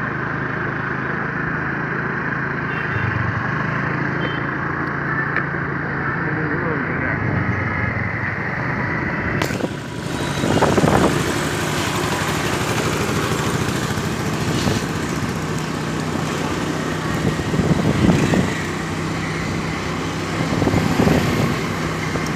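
Motorcycle engine running steadily as the bike rides along, with wind rushing on the microphone from about ten seconds in.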